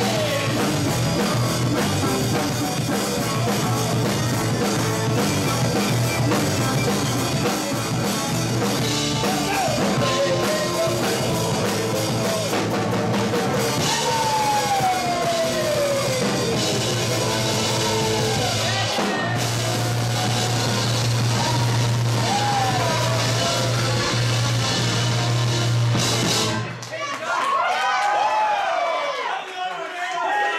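Live rock band playing: keyboards, electric guitar, bass and drum kit, with a man singing lead. The song closes on a long held chord that cuts off about 27 seconds in, leaving voices calling out.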